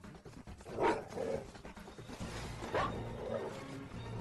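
A few short dog-like growls, about a second in and again near three seconds, over quiet film music.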